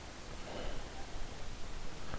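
Steady low hiss of a home microphone recording, with a faint, brief soft sound about half a second in.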